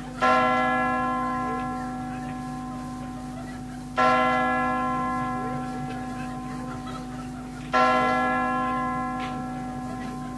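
The New Year's midnight chimes (campanadas): a large bell struck three times, about every four seconds, each stroke ringing out and slowly fading, counting in the new year.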